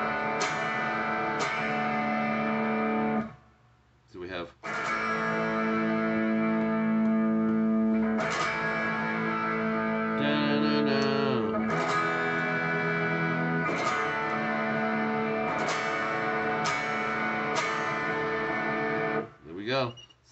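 Electric guitar strumming the open-position chords A major, E major and D/F-sharp, each chord struck and left to ring for a second or two. The playing stops briefly about three seconds in, and about halfway through one chord slides down in pitch.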